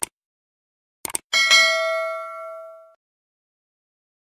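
Subscribe-button sound effect: a click at the start, a quick double click about a second in, then a single bell ding that rings several steady tones and fades out over about a second and a half.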